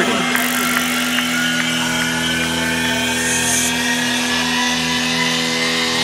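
Sustained electronic synthesizer drone in a psytrance breakdown: a steady chord of held tones with no beat. A hissing noise wash sits over it in the highs from about half a second in until nearly four seconds.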